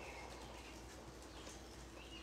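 Very quiet room tone, a faint steady hiss with no distinct sound standing out.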